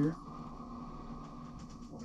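Steady running of the Gold Hog sluice's recirculating water pump and the water flowing down the sluice, a hum with a thin steady whine, stopping at the end as it is shut off.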